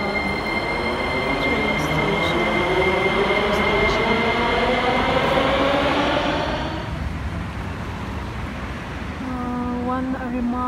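Metro train pulling out of an underground station. Its motor whine rises steadily in pitch as it speeds up over the running rumble, then dies away about seven seconds in.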